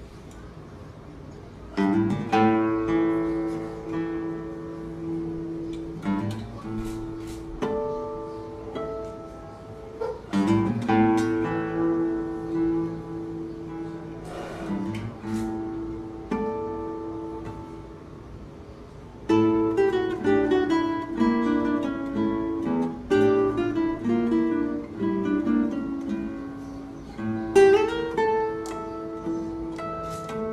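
Solo nylon-string classical guitar playing a slow fingerstyle piece. It opens about two seconds in with a strong chord and lets notes ring. In the second half comes a busier passage of quicker notes.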